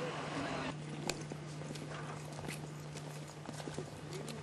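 Footsteps of several people walking in shoes on concrete: irregular sharp scuffs and taps, over a steady low hum.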